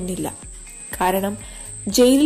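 A voice narrating in Malayalam in short phrases with pauses, over a soft background track. A steady high-pitched tone, like crickets, runs throughout.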